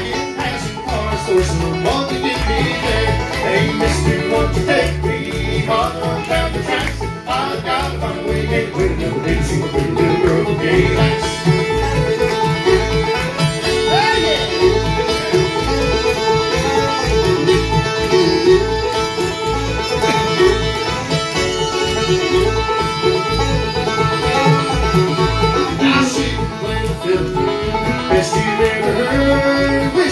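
Live bluegrass band playing an instrumental break with no singing: resonator banjo and fiddle carrying the lead over a strummed acoustic guitar, with a steady driving beat.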